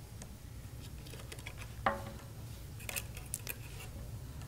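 Faint clicks and taps of a small screwdriver and tiny screws being handled on a circuit board, with one sharper tap that rings briefly a little before halfway, then a few quick small clicks.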